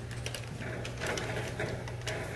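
A few light, sharp clicks and rustles scattered over a steady low hum.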